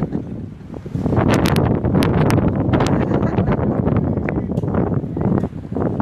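Wind buffeting a handheld camera's microphone, a loud low rumble that eases briefly about half a second in, with a cluster of sharp ticks and rustles between about one and three seconds in.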